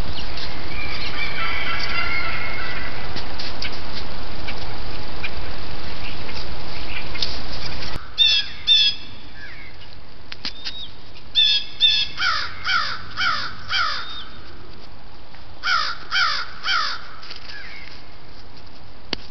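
Birds calling in quick series of three or four short, harsh calls. A steady loud hiss, with fainter calls in it, fills the first half and cuts off suddenly about eight seconds in, leaving the calls over a quieter background.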